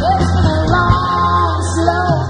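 Live rock band playing: electric guitars, bass and drums over a steady, heavy bass line, with a melody line that bends in pitch.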